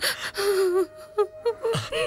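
A woman crying: a sharp gasping intake of breath, then a drawn-out wailing sob and short broken sobs.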